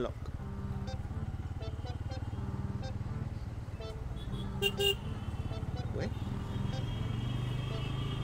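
Motorcycle engine running at low speed in traffic, a steady low hum. About halfway through, a vehicle horn gives two short toots.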